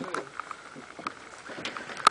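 Water washing against a sailing yacht's hull, a steady hiss, with a few light clicks.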